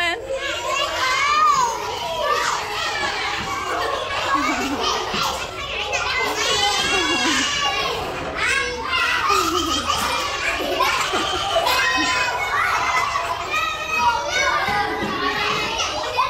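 A roomful of young children talking and calling out over one another, many high voices overlapping without a break.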